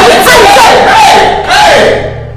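Two women screaming and yelling over each other as a fight breaks out, loud and without a pause, with a man shouting "hey, hey" near the end to break it up.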